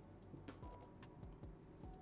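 Near silence with a few faint, sharp clicks, one plainer about a quarter of the way in.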